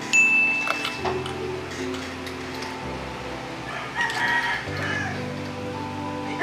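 A rooster crows about four seconds in, over background music of sustained notes. A brief high ringing tone sounds at the very start.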